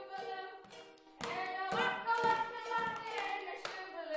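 Singing, with held notes that step in pitch, over a steady beat of hand claps about twice a second.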